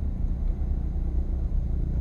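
Steady low rumble of background noise, with faint hiss, in a pause between spoken lines.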